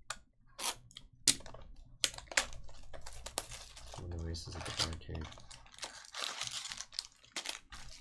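Plastic shrink wrap crinkling and tearing as a box cutter slices open a sealed trading card box, with a series of sharp clicks and snaps.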